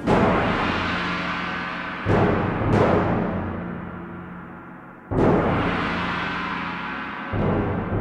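Orchestral soundtrack music built on heavy percussion hits: a loud strike right at the start, two more a little over two seconds in, another about five seconds in and one near the end, each ringing out and slowly fading.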